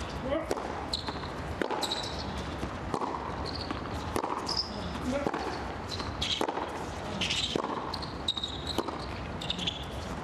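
Tennis rally on a hard court: a racket strikes the ball and the ball bounces about once a second, with short squeaks of shoes on the court in between.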